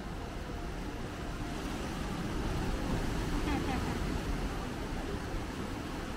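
Steady low outdoor rumble, slightly louder in the middle, with a brief faint voice about three and a half seconds in.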